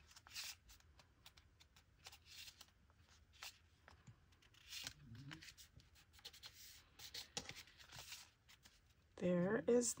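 Paper being handled on a tabletop: soft, scattered rustles and light taps as a freshly glued paper pocket is pressed flat and folded.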